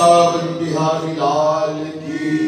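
A man's voice chanting a devotional Hindi verse in long, drawn-out notes, with keyboard accompaniment holding a steady note beneath.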